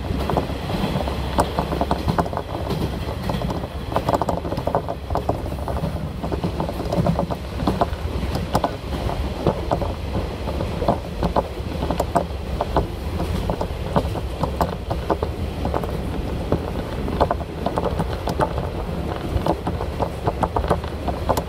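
Ride noise inside a moving diesel railcar: a steady low rumble from the engine and wheels on the rails, with frequent irregular sharp clicks and rattles.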